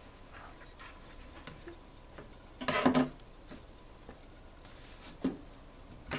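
Quiet handling sounds as a sweatshirt is laid out and smoothed flat on a cutting mat: soft fabric rustles and light taps. One short, louder sound comes about three seconds in, and a smaller one near the end.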